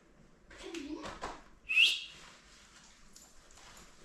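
A person gives one short, sharp whistle, rising and then falling, a little under two seconds in, to call a dog.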